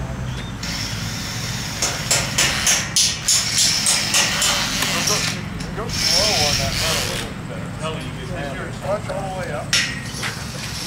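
People talking in the background over a steady low rumble, with a quick run of sharp knocks or clanks about two seconds in and one more sharp knock near the end.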